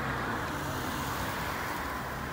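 Road traffic: a minibus driving past close by, its engine running with steady tyre and road noise.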